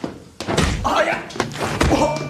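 A classroom scuffle between a teacher and a student: a sudden slam about half a second in, a man's raised voice, and further knocks near the end.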